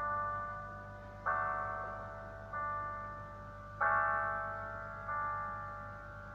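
Slow piano intro: five block chords struck evenly about once every 1.3 seconds, each left to ring and fade before the next, over a faint low steady hum.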